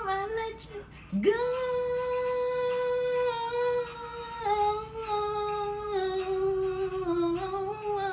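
A woman humming: a few short notes, then a long held note she slides up into about a second in, which steps down in pitch a few times before the end.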